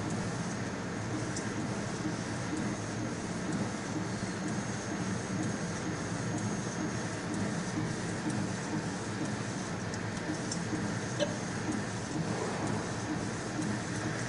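A mini UV flatbed printer running as it prints, a steady mechanical hum with a few faint ticks.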